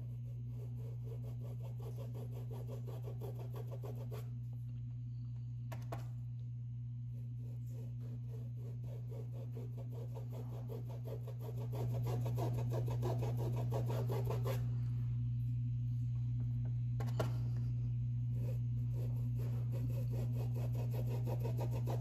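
Faint rubbing of a paintbrush working paint onto cloth, pausing twice, over a steady low hum that steps up in level about twelve seconds in.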